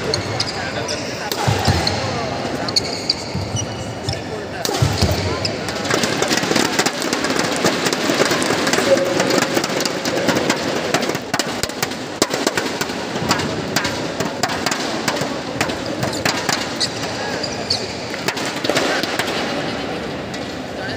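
Badminton play on an indoor court: repeated sharp racket hits on the shuttlecock and the knocks of players' footwork on the court, over a background of voices in the hall.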